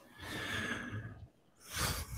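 A person breathing out audibly into a close microphone for about a second, then a short breath near the end.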